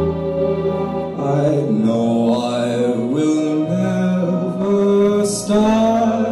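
A male vocalist sings into a microphone over instrumental accompaniment, holding long notes that step and glide between pitches.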